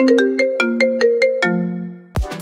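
Mobile phone ringtone: a quick melody of about eight short, bright notes over held lower notes, ending on a long low note that fades out near the end.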